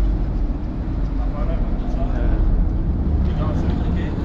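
Low, steady rumble of a passenger ferry's engines and churning water as it comes alongside the wharf, with faint voices in the background.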